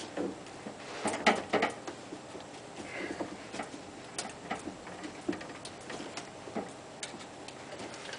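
Irregular light clicks and knocks of hands and tools working at a kitchen sink's drain pipe fittings under the sink, with a small cluster of them about a second in.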